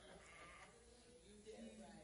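Near silence: room tone in a church hall, with a faint voice in the background.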